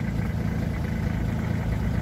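Vehicle engine idling steadily, a low even hum.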